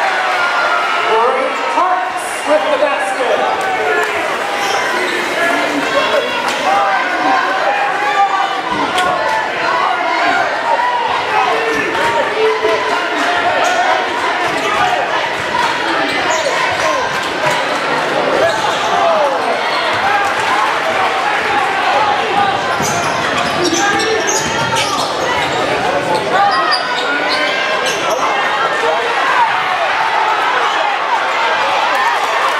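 Basketball game in play: a ball bouncing on the hardwood court under a continuous din of many overlapping crowd voices.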